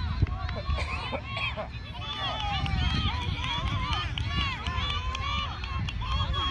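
Many voices shouting and calling over one another from soccer spectators and players, with no single voice standing out, over a steady low rumble.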